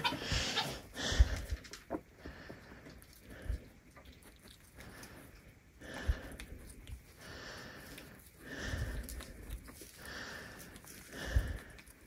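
Soft, intermittent snuffling and rustling as Nigerian Dwarf goats sniff at a carrot held out by hand, with a few faint knocks.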